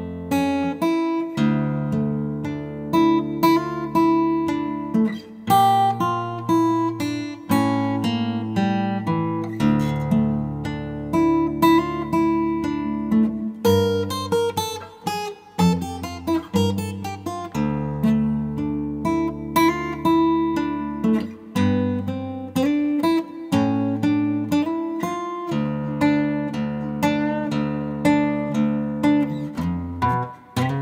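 Steel-string acoustic guitar in dropped D tuning, fingerpicked slowly: a low bass note rings under a line of single melody notes, with hammer-ons and slides.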